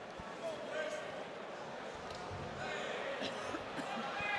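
Kickboxing strikes landing: a handful of sharp thuds of kicks and punches on the body and gloves. Crowd and cornermen are calling out in the background.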